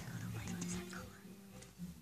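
Quiet whispered voices over a low, steady background hum.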